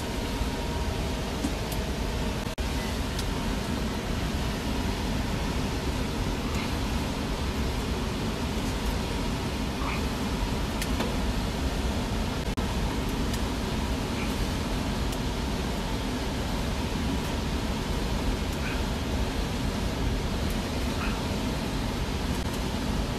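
Carrier air handler's ECM blower motor running steadily with its blower compartment open, a steady rush of air with a low hum. It is pulling in air straight from the crawl space, which loads it more than with the door closed.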